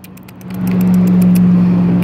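A motor vehicle's engine close by, a steady low hum that swells about half a second in and then holds.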